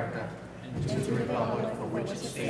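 A roomful of people reciting the Pledge of Allegiance together in unison, with a short pause between phrases about half a second in.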